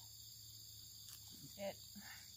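Faint, steady chorus of crickets and other insects, a high continuous trill.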